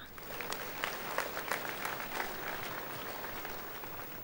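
Congregation applauding: many hands clapping in a steady, even patter.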